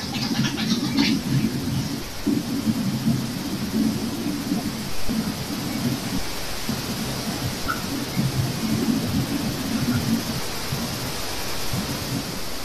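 Steady low rumbling noise with a hiss over an open microphone line, the rumble surging unevenly like air buffeting the mic.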